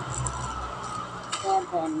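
Plastic packaging rustling as a parcel is handled, with a sharp click about halfway through, and a voice starting to count near the end.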